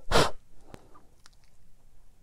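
A short, loud breath noise, like a sharp sniff or exhale, right at the start, then faint small ticks of a watercolour brush working paint on paper.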